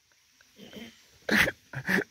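Two dogs vocalising as they start to play: a faint low growl about half a second in, then two short, sharp barks near the end.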